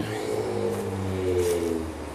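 A motor vehicle's engine running in the background, its pitch rising slightly and then easing off again around the middle.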